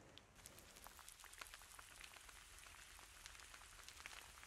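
Faint, dense crackling: many tiny irregular ticks, like fine rain or sizzling, starting about half a second in.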